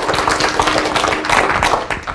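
Audience applauding: a dense patter of many hands clapping that starts to die away near the end.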